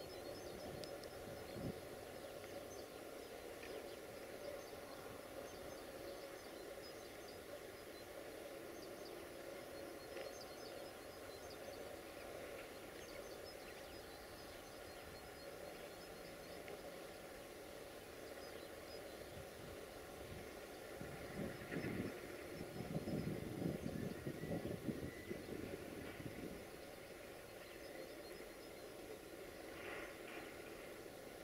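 Distant Sulzer-engined 060-DA diesel-electric locomotive running faintly and steadily as it approaches, with a louder, rougher engine rumble about two-thirds of the way in. Birds chirp faintly.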